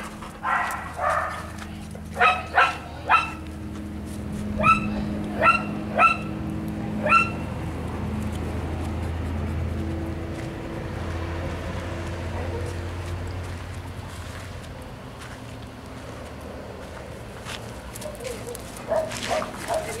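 A dog barking in short single barks: a few in the first couple of seconds, then a run of four about half a second to a second apart around five to seven seconds in. A low steady hum runs under the middle stretch.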